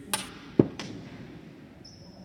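A sharp click, then a louder low thud about half a second later with a weaker click just after it, and a faint high steady tone near the end.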